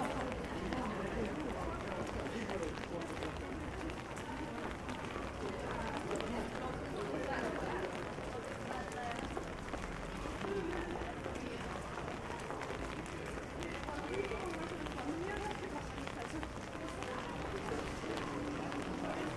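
Wet city street ambience: footsteps on rain-soaked paving, passers-by talking in the background, and a steady hiss of rain and wet surfaces.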